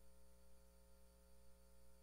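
Near silence: room tone with a faint, steady electrical hum.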